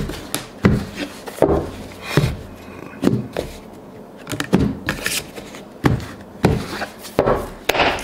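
Tarot cards being handled on a cloth-covered table: about a dozen irregular soft taps and slaps as the deck is cut and the piles are picked up and set down, with the rub of cards sliding against each other.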